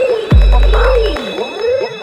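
Instrumental passage of an electro / Miami bass track: a deep booming bass-drum hit that drops in pitch and holds for nearly a second, a sharp clap-like hit, and wobbling synth tones sliding up and down.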